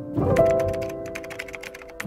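Rapid computer-keyboard typing clicks over soft background music with held chords, the music rising in level a few tenths of a second in.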